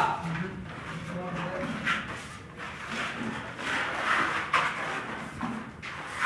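Steel putty blades scraping wall putty across a plastered wall in repeated short strokes.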